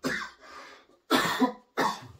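A man coughing into his hand: a short cough at the start, then two loud coughs in quick succession a second later.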